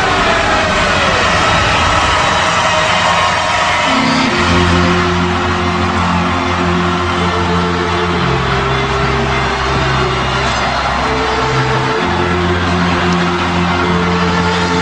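Steady noise of a large celebrating crowd; about four seconds in, music with long held low chords comes in over it, the chords changing about every four seconds.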